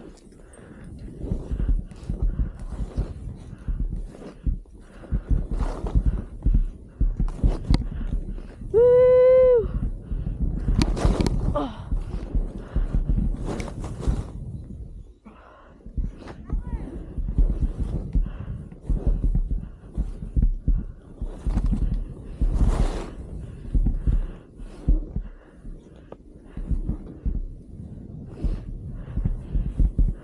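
Skis running through powder snow, with wind rumbling on the microphone and irregular thumps and scrapes. About nine seconds in, a person gives one short whoop.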